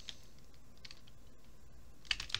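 A few faint, scattered computer keyboard keystrokes.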